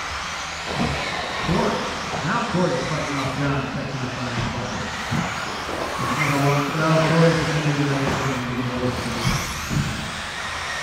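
Electric 4WD RC buggies racing on a carpet track, their motors giving a thin high whine that rises and falls, under a voice talking.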